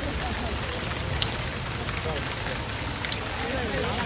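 Steady rain falling on umbrellas and wet pavement: an even hiss with scattered sharp drop ticks. Voices are faintly heard near the end.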